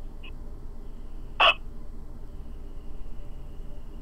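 A pause between phrases of Hmong kwv txhiaj singing: a faint steady background hiss, and about a second and a half in, one short, sharp vocal sound from the singer.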